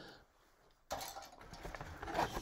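Light clatter and rustle of plastic model-kit sprues being handled and set down, starting about a second in.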